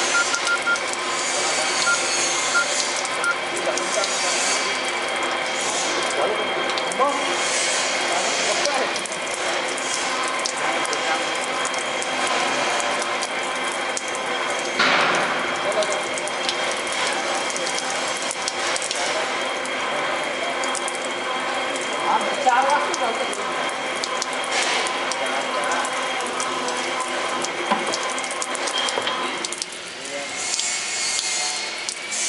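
Thin jets of water spraying and pattering down from many points inside a large flanged steel pipe end, a steady rushing sound over a constant machine hum.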